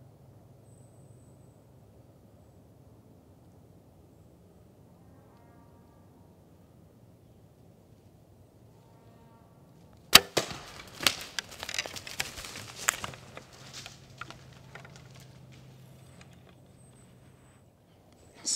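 A compound bow shot at a blacktail buck: one sharp crack of the release and arrow strike about ten seconds in, after quiet forest stillness. It is followed by several seconds of irregular cracking and rustling as the hit buck crashes off through the brush and leaves.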